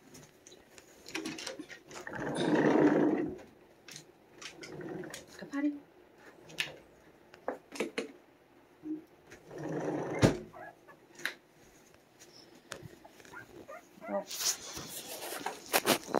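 Dog sounds from Cane Corsos, mixed with scattered clicks and knocks and bursts of rustling about two seconds in, around ten seconds in, and again near the end.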